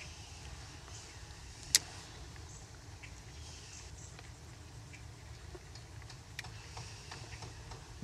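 Low, steady outdoor background with one sharp click about two seconds in and a fainter click near the end.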